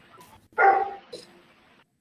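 A dog barking once, a single short bark about half a second in.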